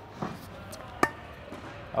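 A single sharp pop of a tennis ball meeting racket strings about a second in: a drop volley struck with a very loose grip. A fainter thud comes just before it.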